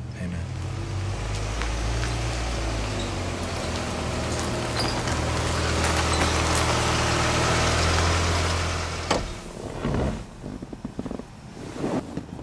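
Car running with a steady low engine hum and road noise, growing louder, then cutting off suddenly about nine seconds in with a sharp click. A few footsteps on gravel follow near the end.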